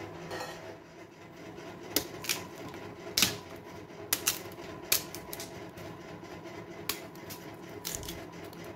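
Whole cassava roots being handled in a plastic colander basket: irregular sharp knocks and clatters, about eight in all, as the roots bump against each other and the basket, over a faint steady hum.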